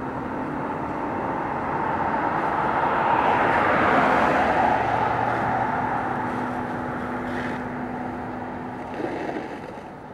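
A road vehicle passing by: its noise swells to a peak about four seconds in and then fades away, over a steady low engine hum. A small bump comes near the end as the sound fades out.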